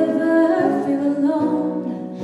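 Young woman's solo voice singing long held notes through a microphone and PA, with acoustic guitar accompaniment.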